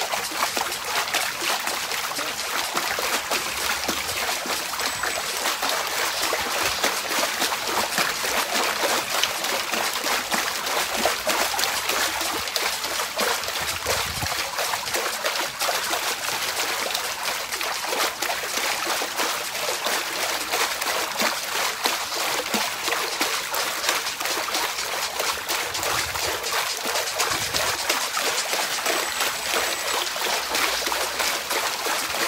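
Continuous splashing of shallow water in an inflatable paddling pool as legs kick rapidly up and down, a steady fast churning with no let-up.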